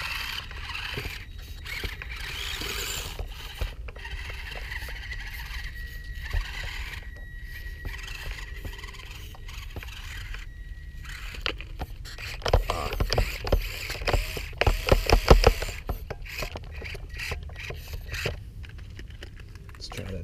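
Losi Micro 1:24 rock crawler running. Its small electric drive whines thinly and steadily for several seconds, then the truck clatters and scrapes over rocks, the loudest part, a few seconds past the middle.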